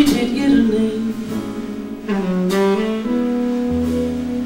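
Tenor saxophone playing a slow jazz ballad phrase, ending in a long held note, over quiet bass accompaniment.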